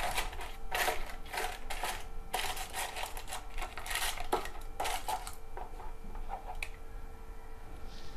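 Butter paper (baking parchment) rustling and crinkling as it is pressed and smoothed into a metal loaf tin, a run of crisp crackles and scrapes over the first five seconds. After that it goes quieter, with a single sharp click.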